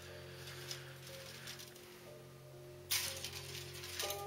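Quiet background music with steady held notes. A brief rustle of handling noise comes about three seconds in.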